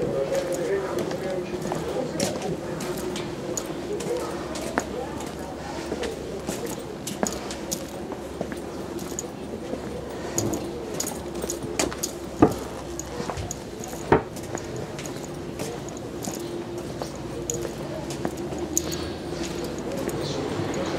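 Ambient sound of walking through a covered market aisle: indistinct voices and a steady hum, with light footsteps about two a second. Two sharper knocks about twelve and fourteen seconds in.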